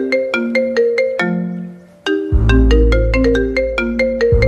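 Smartphone ringtone playing a repeating marimba-like melody of short struck notes. About halfway through, a low buzz joins it, the phone vibrating against the hard surface it lies on; the buzz breaks off briefly near the end and starts again.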